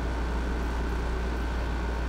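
Steady background hum with a low rumble and a faint hiss, unchanging throughout, with a thin faint tone above it; no distinct events.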